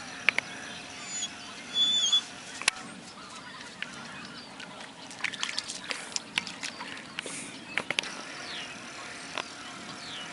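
A flock of waterfowl calling, with scattered sharp clicks and a louder short burst about two seconds in.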